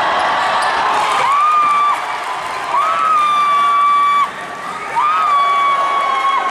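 Gym crowd noise with three long, steady whistle-like tones, each sliding up at its start, the middle one the longest.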